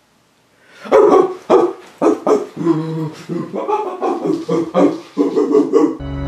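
A string of short, excited barks and yelps that starts about a second in and goes on in quick, irregular bursts, with a laugh near the end.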